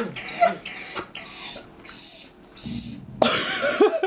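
A dog whining: a quick run of about six high-pitched whines, roughly two a second, the later ones longer and dropping in pitch at their ends.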